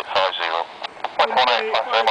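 Air traffic control radio talk coming through a handheld airband scanner's speaker: a voice on frequency continuing a readback.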